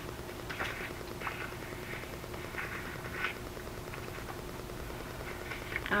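Paper being handled on a cutting mat: a few soft, short rustles and scrapes as the sheets are slid and pressed flat, over a low steady hum.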